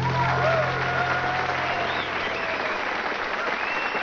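Audience applauding at the end of a bluegrass song, with the band's last low note dying away in the first second or so.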